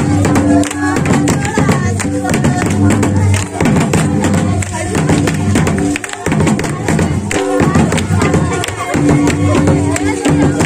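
Santali Sohrai dance music: dense, fast drum strokes with jingling percussion and singing voices.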